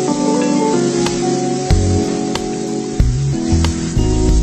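Background music over the steady hiss of rice vermicelli frying in an aluminium wok, with light metallic clicks as a metal utensil tosses the noodles against the pan.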